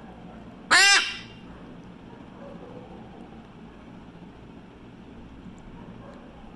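Blue-and-gold macaw giving one loud squawk about a second in, about half a second long, rising then falling in pitch, while held in a towel for syringe medication.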